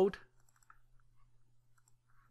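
A few faint, sharp computer mouse clicks over a low steady hum.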